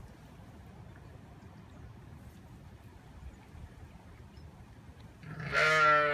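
A ewe gives one long, quavering, low-pitched bleat near the end, the deep maternal call of a ewe to her newborn lambs. Before it there is only a faint low background rumble.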